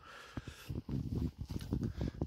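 Footsteps on a concrete floor: a quick run of light, irregular taps and clicks.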